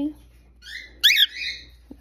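Cockatiel giving a few short, high-pitched chirping whistles, the loudest a quick rising-and-falling sweep about halfway through.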